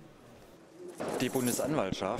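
Near silence for about a second, then a man's voice starts speaking.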